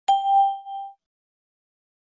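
A single bell-like chime, struck once, ringing with a few clear tones and fading out within about a second.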